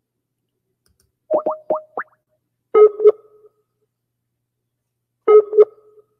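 Outgoing internet phone call ringing: about a second in, four quick rising blips, then a double electronic ringback beep that repeats about every two and a half seconds.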